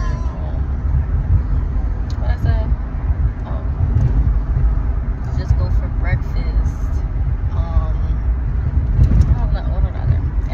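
Steady low rumble of a car driving, heard from inside the cabin, with faint voices over it now and then.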